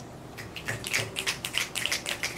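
Audience finger-snapping in appreciation of a finished poem: a scattered patter of crisp snaps, beginning about half a second in.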